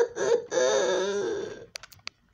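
A man laughing in short bursts that run into one long, drawn-out, wavering vocal note which fades away. A few sharp clicks follow near the end as the camera is handled.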